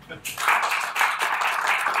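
Applause from an audience, with the speaker clapping along, swelling in about half a second in and going on steadily; a short laugh comes at the start.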